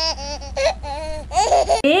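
High-pitched, childlike giggling laughter from a woman voicing a doll being tickled, with speech starting near the end.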